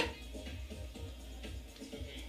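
Music from a televised live pop performance playing through a TV in a small room, fairly quiet, with a steady bass line underneath.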